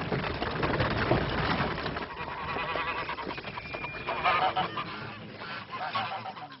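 Farmyard birds calling a few times, once in the first two seconds and again near the end, over a busy background of movement and noise.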